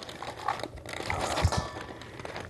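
Plastic bag crinkling and rustling as cut vegetables are tipped out of it into a stainless steel bowl, with a soft thump about one and a half seconds in.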